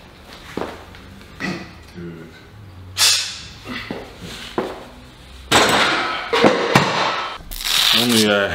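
Heavy barbell push press with 110 kg: a lifter's sharp forceful breaths, the first loud one about three seconds in, then a longer rush of heavy breathing and effort in the second half, with a couple of sharp knocks from the loaded bar and plates.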